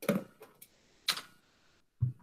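Handling noise close to the microphone: a few sharp knocks and clicks, the loudest at the start and about a second in, as a small handheld whiteboard is picked up and brought to the camera.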